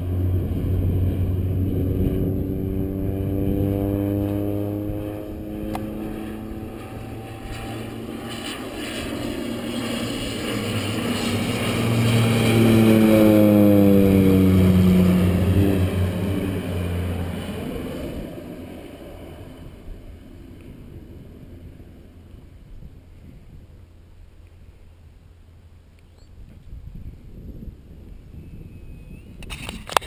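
Crop-dusting airplane passing low overhead: its engine and propeller drone swells to a peak about halfway through, drops in pitch as it goes by, then fades away into the distance.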